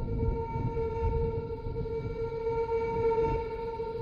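Sustained drone from a film trailer soundtrack: one steady held tone with overtones over a low, restless rumble.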